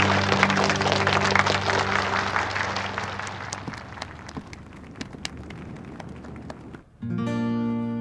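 A crowd of students applauding, the clapping fading away over several seconds, over background music. Near the end the sound drops out briefly and a new music cue with guitar begins.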